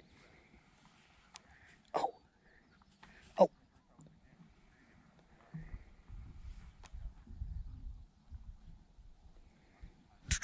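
Quiet outdoor ambience broken by two short exclamations, "on" and "Oh", from the angler. From about the middle of the clip, a low, uneven rumble on the microphone lasts for about three seconds.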